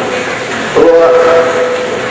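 A man's voice in the sung, chanted delivery of a Bangla waz sermon, holding one long steady note that begins just under a second in and lasts about a second.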